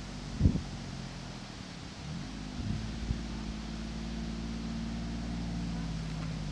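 John Deere Gator utility vehicle's engine running, rising in pitch about two seconds in as it picks up speed, then holding steady. A brief low thump comes about half a second in.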